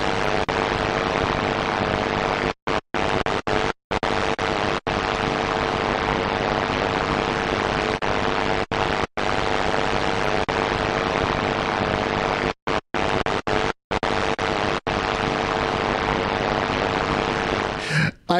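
Television static used as a glitch effect: a steady hiss with a faint hum underneath, cutting out abruptly for split seconds several times.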